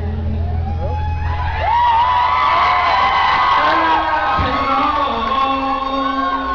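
An acoustic guitar chord dies away, and a club crowd breaks into cheering with many overlapping whoops.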